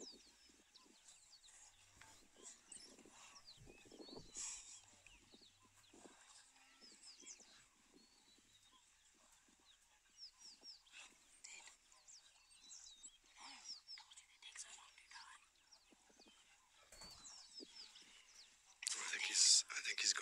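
A pack of African wild dogs twittering in many short, high-pitched chirps while feeding at a kill, with a louder burst of calls near the end.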